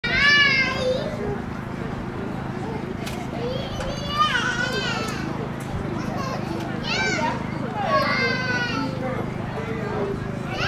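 Several high-pitched, drawn-out shouts and calls from young voices, each about a second long and rising and falling in pitch, over a steady low background hum and murmur of voices outdoors.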